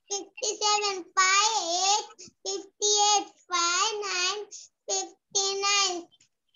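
A young child's voice reciting numbers aloud in a sing-song chant, syllable after syllable with short pauses, heard over an online video call.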